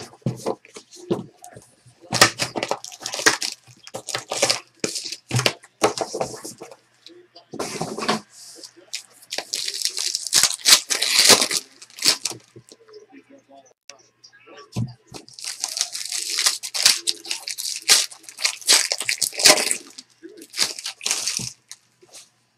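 Plastic and foil wrapping on a trading-card box and its packs being torn open and crinkled by hand, in three long crackling bouts with short pauses between.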